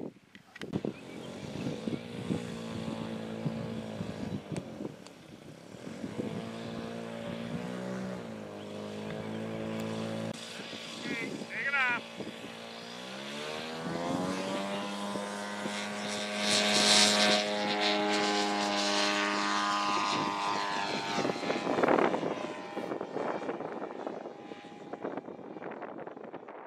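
Propeller engine of a model tow plane running at low power. About thirteen seconds in it opens up with a rising pitch to pull a glider off on an aero-tow. It is loudest around sixteen to eighteen seconds in, then holds steady as it climbs away and fades near the end.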